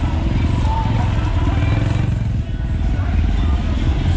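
Motorcycle and car engines running in slow, crowded street traffic, a steady low rumble, with voices faintly in the background.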